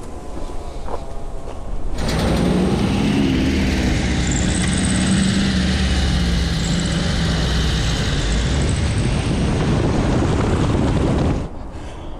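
Classic VW Beetle driving at a steady pace: a low engine hum under steady road and wind noise. It starts abruptly about two seconds in and stops shortly before the end.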